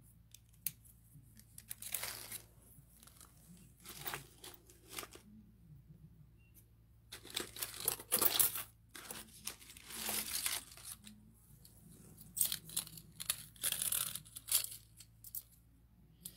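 Paper being handled: intermittent rustling and tearing in short bursts, with quiet gaps between.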